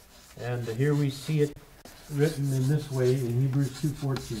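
A man talking in a low voice, with chalk scraping on a blackboard underneath as a point is written up.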